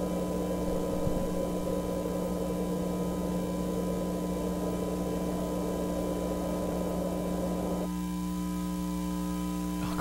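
Steady electrical buzzing hum, several held tones over a hiss. About eight seconds in the hiss drops away, leaving a cleaner buzz with evenly spaced overtones.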